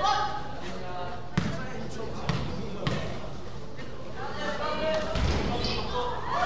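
A basketball bouncing three times on a gym floor within about a second and a half, each bounce a sharp thud, amid voices of players and spectators in a large gym.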